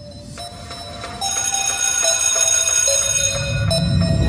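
Bell-like chiming tones, several ringing together in a steady cluster as part of the soundtrack. They swell and grow louder about a second in.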